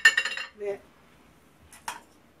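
A sharp, ringing clink of hard kitchenware, its ring dying away within about half a second, followed by a brief faint click near the end.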